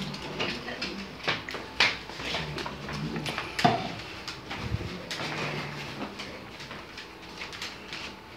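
A dog and a cat playing on a hardwood floor: scattered clicks and scuffles of claws and paws on the boards, with a few short, low animal vocal sounds and one sharp knock a little past halfway.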